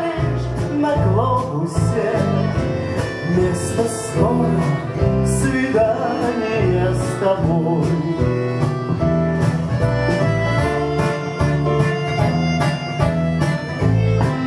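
Live band playing an instrumental break between verses: acoustic guitar, bayan (button accordion), clarinet, keyboard, bass and drums, with the drums keeping a steady beat under a wavering melody line.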